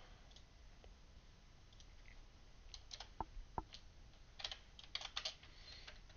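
Faint computer keyboard typing: a few scattered keystrokes about three seconds in, then a quick run of keystrokes near the end.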